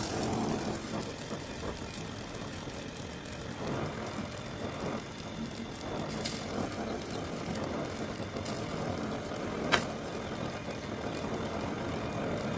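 Handheld gas torch flame hissing steadily as it heats a bent steel wire, with a single sharp click about ten seconds in.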